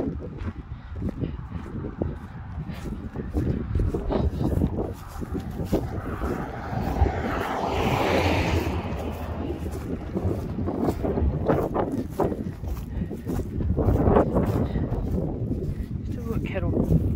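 Wind buffeting a phone microphone, with footsteps on dry grass. A car passes on the road, its noise swelling and fading about halfway through.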